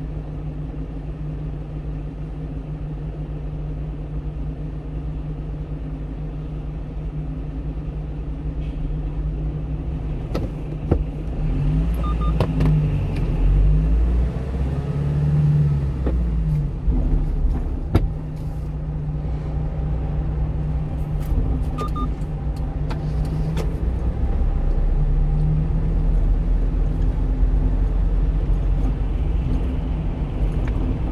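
A 1-ton box truck's engine heard from inside the cab, running steadily while stopped in traffic. About eleven seconds in, it gets louder and its pitch rises and falls for a few seconds as the truck pulls away and runs up through the gears, with a few sharp knocks mixed in.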